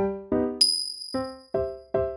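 Background music of evenly spaced plucked keyboard notes, about two or three a second. About half a second in, the notes pause and a single high bell-like ding sound effect rings out and slowly fades, with the music resuming under it.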